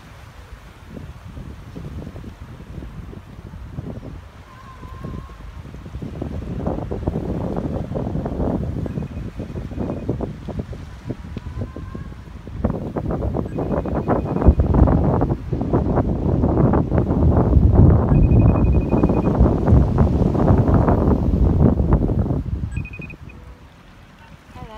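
Wind buffeting the microphone in gusts, building a few seconds in, loudest through the second half, then dying away near the end.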